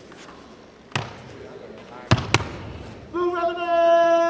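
Three sharp stepping hits from a probate line, about a second apart and then a quick pair, followed about three seconds in by the neophytes starting their chant of the fraternity creed on one long held note.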